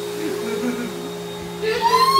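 A steady mechanical hum with faint voices over it.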